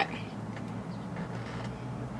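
Quiet room tone with a steady low hum and no distinct sound events.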